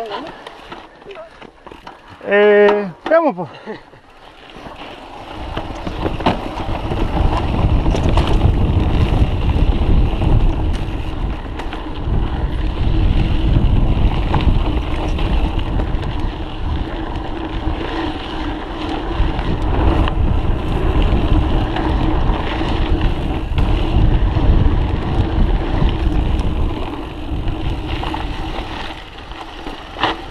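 Mountain bike descending a trail: wind rushes over the microphone and the bike rattles over rough ground. The sound builds from about four seconds in and stays loud, with a steady hum running under it.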